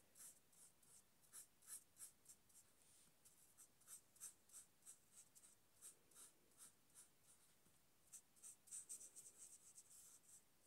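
Marker pen nib stroking across paper while colouring in: faint, short scratchy strokes, two or three a second, coming quicker and a little louder near the end.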